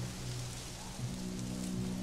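Steady rain falling, over a low sustained music drone.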